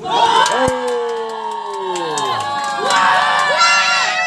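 Spectators and players shouting and cheering at a football match, many voices overlapping and rising and falling. A single sharp thump, like a ball being kicked, cuts through about two-thirds of a second in.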